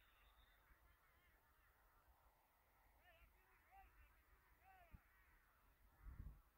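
Near silence with many faint, overlapping bird calls: short chirps that rise and fall in pitch, several a second.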